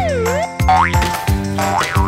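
Upbeat children's background music with a regular drum beat and held notes, overlaid with a cartoonish whistle-like sound effect that slides down and then back up in pitch near the start.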